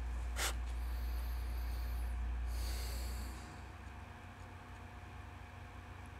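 A man's breathing through the nose: a short sniff about half a second in, then two longer breaths, the second one louder. A low hum in the background drops away a little after three seconds in.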